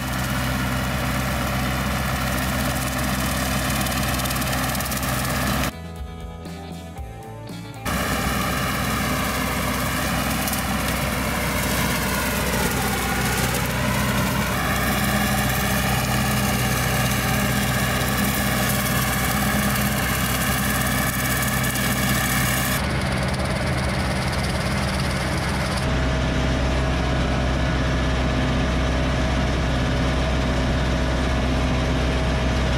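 Ford 5000 tractor engine running steadily under load while pulling a rotary cutter through brush, its pitch dipping briefly about halfway through.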